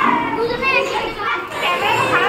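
A crowd of children talking and calling out at once, a continuous babble of many young voices in a classroom.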